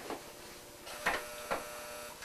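Three light clicks and knocks of painting supplies being handled at the easel, over a steady faint hum.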